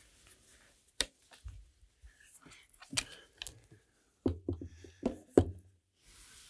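Handling noise as a JBL EON 712 powered PA speaker is lifted and set onto a tripod speaker stand: a sharp knock about a second in, another a couple of seconds later, then a cluster of clunks near the end as the speaker is seated on the stand.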